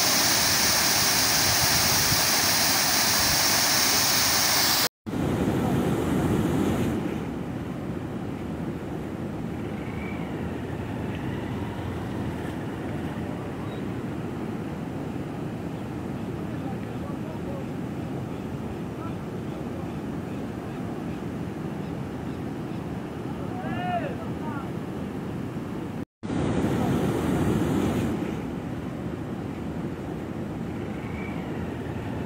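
Water spilling over a concrete dam spillway, a loud steady rush of falling water. After a brief break about five seconds in it goes on lower and duller, with another short break near the end.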